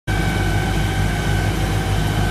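A small fishing boat's engine running steadily under way, heard from inside the wheelhouse: a low drone with a steady high whine over it.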